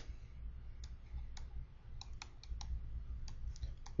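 Faint, irregular clicks and taps of a stylus on a tablet PC screen during handwriting, coming more often in the second half.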